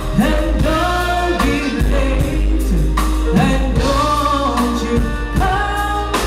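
A woman sings a soul lead vocal over a live band, with a steady bass line and drum kit.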